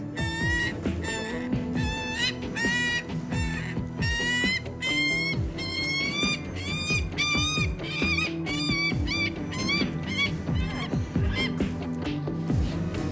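A bird of prey calling over and over, short harsh calls about twice a second, while it is held and struggles in the falconer's gloved hands; the bird is agitated at being handled. Background music with steady low notes runs underneath.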